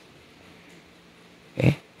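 A pause in speech: quiet room tone with a faint steady hum, then a man's short "eh" through a microphone near the end.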